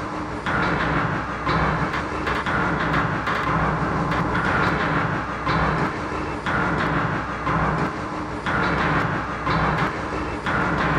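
A continuous, steady rhythmic clatter with a train-like clickety-clack, two alternating beats repeating about once a second over a low steady hum. It runs unchanged across the picture's cuts, so it is a soundtrack laid over the images rather than the sound of any one scene.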